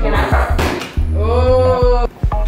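Background music with a deep bass line and a sung vocal line.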